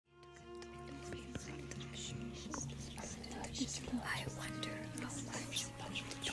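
Many overlapping whispering voices over a sustained musical drone of held notes, fading in from silence at the start.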